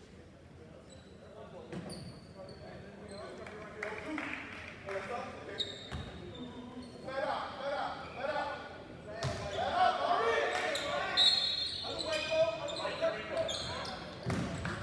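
Basketball bouncing on a hardwood court, with short high sneaker squeaks and voices of players and spectators calling out, echoing in a large gym. The voices grow louder in the second half.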